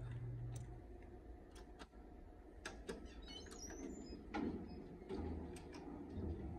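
Quiet inside an elevator cab: a faint low hum with scattered light clicks and taps.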